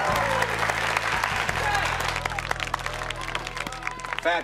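Studio audience applauding over music with steady low notes; the applause dies down toward the end.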